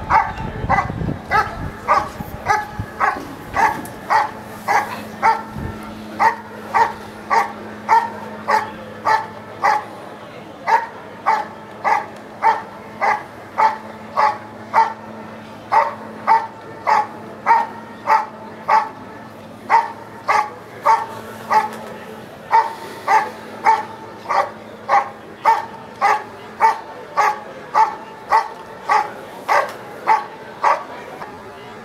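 German Shepherd barking steadily and rhythmically, a little under two barks a second, at a helper standing in the blind: the bark-and-hold phase of IPO protection work.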